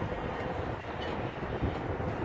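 Steady low outdoor rumble with no distinct event: background noise of an open parking lot.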